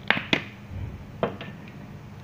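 Light clicks and taps of a mobile phone with its back cover off being handled in gloved hands: two sharp clicks near the start, a soft bump, then another click a little past halfway.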